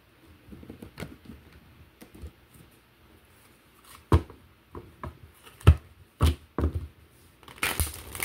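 A deck of tarot cards being handled on a tabletop: a string of separate light taps and knocks as the cards are gathered and squared. Near the end the deck is shuffled, a short ruffling rattle.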